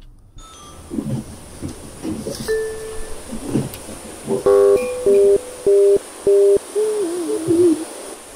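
Electronic doorbell ringing four times in quick succession, a steady tone with abrupt starts and stops, beginning about halfway through, then a wavering tone near the end.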